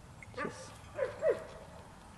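A dog whining: a thin held whine from about half a second in, with two short falling whimpers about a second in.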